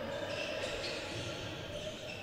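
A basketball being dribbled on a hardwood court, heard faintly against the echoing hall sound of a near-empty arena.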